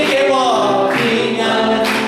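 A congregation singing a Chinese worship song together, led by a worship leader on a microphone, the voices holding long notes.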